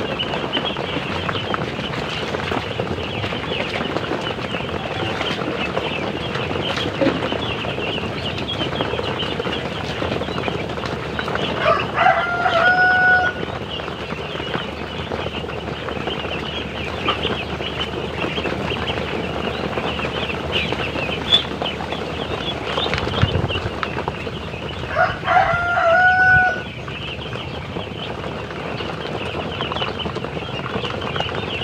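Hundreds of young ducks peeping and calling together in a dense, continuous high chorus. Twice, at about twelve seconds in and near twenty-five seconds, a rooster crows over it.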